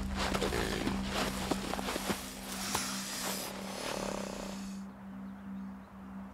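A perentie monitor lizard and a mulga snake struggling on dry desert ground: scuffling with sharp knocks and thuds and a hiss about halfway through, stopping about five seconds in, over a low steady drone of background music.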